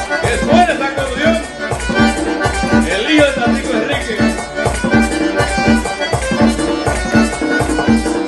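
Diatonic button accordion playing a merengue típico over a steady percussion beat.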